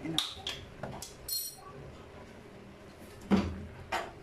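Metal fork clinking and scraping against an aluminium cooking pot as chicken and shredded vegetables are stirred, with a louder knock a little over three seconds in.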